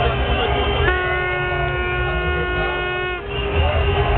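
Drum & bass from the sound system, heavy bass pulsing, cut by a steady air-horn blast of about two seconds starting about a second in, during which the bass drops away.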